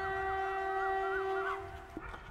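Electric locomotive's horn sounding one long steady blast that cuts off near the end.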